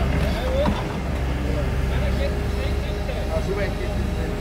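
Mini excavator engine running steadily under load, with hydraulic work sounds as the bucket digs and pries at a tree stump.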